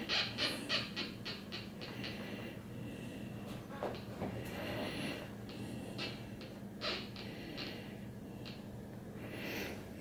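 Home-built Minipulse Plus pulse induction metal detector's audio: a quick run of short, faint pulses, about four a second, that speed up and fade within the first second or two as a small gold ring is passed over the coil. Then comes a faint irregular crackle at the threshold with a few isolated clicks, over a low steady hum.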